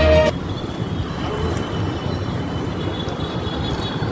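Music cuts off just after the start, giving way to steady street traffic noise from passing vehicles.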